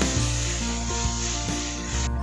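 Background music over a steady sizzling hiss of tomatoes and onions frying in a kadai as they are stirred with a spatula. The hiss cuts off suddenly at the very end.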